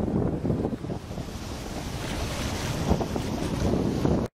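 Shallow ocean surf washing up the beach, its hiss swelling about two seconds in as a wave runs up, under heavy wind buffeting on the microphone.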